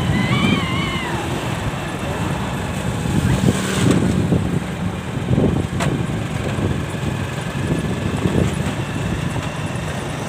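Wind buffeting the microphone over engine and road noise from riding in the open along a road: a steady, uneven low rumble.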